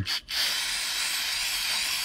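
Aerosol can of brake cleaner spraying onto a shop rag: a brief puff, then a steady hiss.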